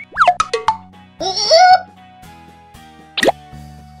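Cartoon sound effects over light children's background music: a quick falling plop-like glide at the start, a few clicks, and a sharp swoosh about three seconds in.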